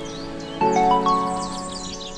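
Intro music: a held, ringing chord that is struck afresh about half a second in and slowly fades, with faint high chirps above it.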